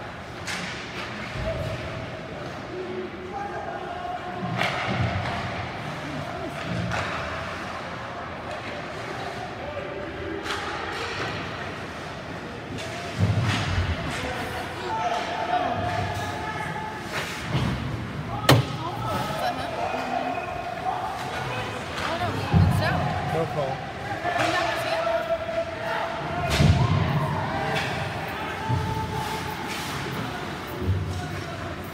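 Ice hockey game in an indoor rink: sticks and puck knocking and thudding against the boards, with a sharp crack about two-thirds of the way through, under players and spectators calling out.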